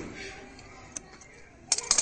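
Large metal tailor's scissors being put down on a stone floor, a few sharp metallic clicks and a clatter with a short ring near the end. A single faint click about a second in.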